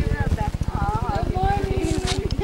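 Voices calling out and exclaiming, including a long drawn-out vowel, over a steady rapid low pulsing of about a dozen beats a second.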